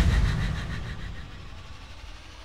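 Low rumbling tail of a cinematic boom hit, fading away steadily, with a faint wavering high tone over it.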